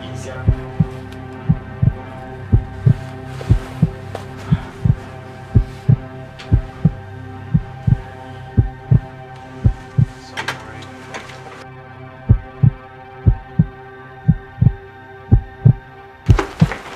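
Heartbeat sound effect, a steady double thump about once a second, over a sustained low drone, as suspense scoring.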